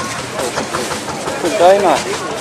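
People talking, a few words about half a second in and again near the end, over a steady background hiss.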